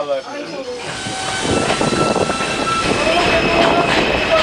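New York City Subway train pulling into an elevated station: rolling wheel and rail noise with a steady electric whine, getting louder from about a second and a half in.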